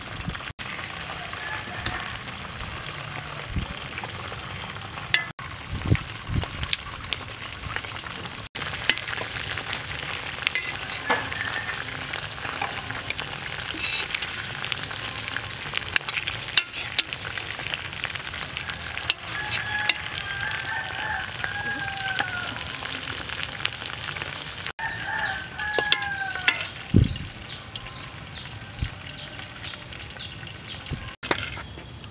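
Food sizzling as it fries in hot oil, with scattered clicks of a utensil in the pan. A rooster crows twice in the background in the latter part, each call falling in pitch.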